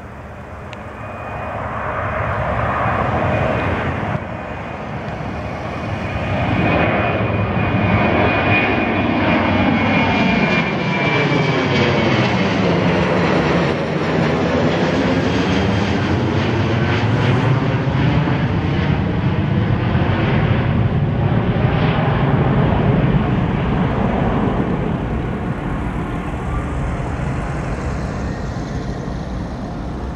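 Twin-engine jet airliner flying low overhead. Its engine noise builds over the first few seconds, with a high whine riding on top. It is loudest through the middle, with a sweeping, phasing rush as it passes, and dies away slowly near the end.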